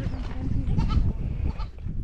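A goat bleats briefly about a second in, over wind rumbling on the microphone.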